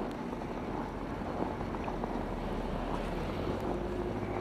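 A steady low rumble under an even hiss of outdoor noise, with no distinct events.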